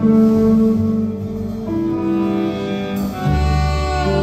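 Live band music from saxophones, double bass, drum kit and electric guitar, with long held notes that change pitch every second or so. A deep bass note comes in about three seconds in.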